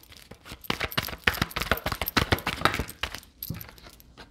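A deck of tarot cards being shuffled by hand: a rapid, uneven run of card flicks and clicks.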